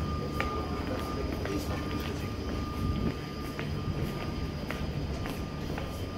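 London Underground Victoria line 2009 Stock train standing at the platform with its doors open: a steady hum of its onboard equipment, with a thin steady whine that fades about halfway through. Light footsteps tick on the platform about twice a second.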